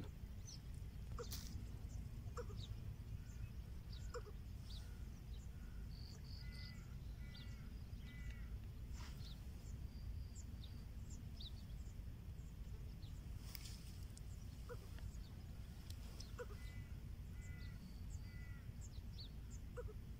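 Birds calling on and off over a steady low background rumble: scattered short high chirps, and twice a quick run of three calls. A few faint clicks are heard among them.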